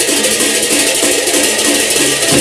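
Sasak gendang beleq ensemble playing a lively piece: pairs of hand cymbals clash continuously in a dense shimmering layer over short repeated pitched notes. The deep beats of the large barrel drums are subdued and return strongly just after the end.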